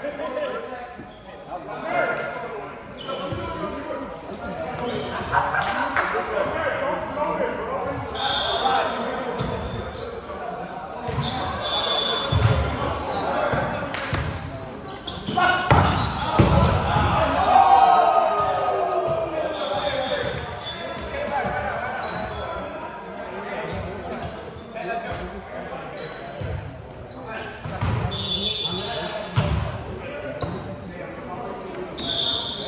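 Ball being struck and bouncing repeatedly in an echoing indoor gym during play, with players' voices calling out throughout.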